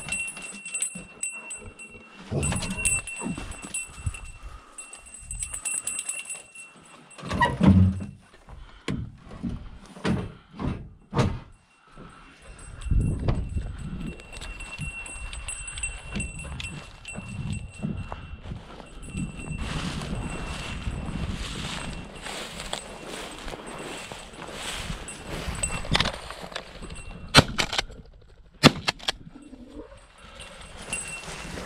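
Walking through dry grass and field stubble, then two shotgun shots a little over a second apart near the end, the loudest sounds here: a double on rooster pheasants.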